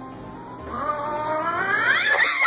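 A cat yowling: a drawn-out caterwaul that starts a little way in and climbs steadily in pitch and loudness, the wail of a cat squaring up to another cat.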